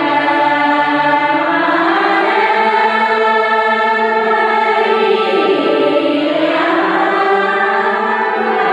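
Group of women singing a song together as a choir, in long held notes.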